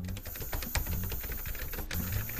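Cartoon sound effect of gas spraying into a glass chamber, a continuous hissing clatter of rapid ticks that starts abruptly, over background music with a low repeating bass line.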